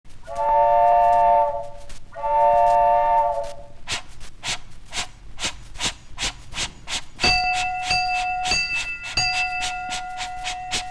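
Train sounds opening a children's record: a chord whistle blown twice, then a steady chugging rhythm of about four beats a second, then a bell ringing in even strokes. The three sounds stand for the story's three trains: the whistle, the chug and the bell.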